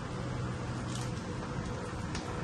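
Steady background room noise, a low hum with an even hiss, and a faint short click about a second in.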